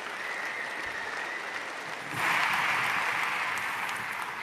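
Large audience applauding, swelling louder about two seconds in.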